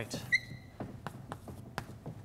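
Chalk on a chalkboard as arrows are drawn: a short high squeak about a third of a second in, then a run of light taps and scratches.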